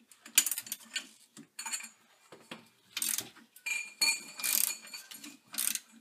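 Socket ratchet wrench clicking in irregular bursts as it loosens the lower shock-absorber bolt at the rear axle mount, with clinks of the steel wrenches against the bolt. One clink rings briefly about two-thirds of the way through.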